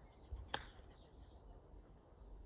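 Golf club striking a golf ball in a chip shot: one sharp click about half a second in, with birds chirping.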